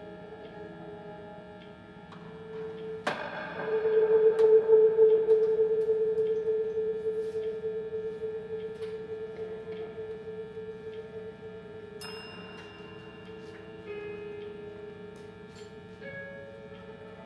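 Experimental drone music from an electric guitar run through tabletop effects: steady overlapping tones, with a new note struck about three seconds in that swells, then slowly fades. Fresh higher tones come in near twelve seconds and again near fourteen.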